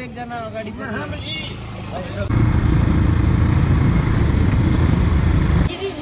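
A few words of men's speech, then a loud, steady low vehicle rumble for about three seconds that starts and stops abruptly.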